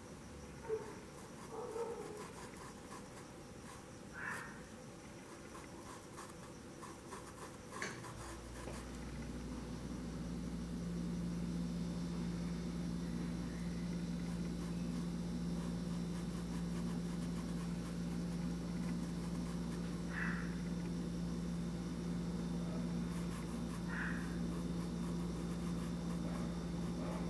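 A steady low hum sets in about eight seconds in and holds, with a few faint short chirps over it.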